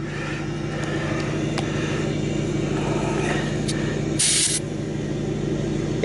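Truck engine idling steadily, with one short hiss of air a little over four seconds in as a dial tire gauge is pressed onto the tire's valve stem.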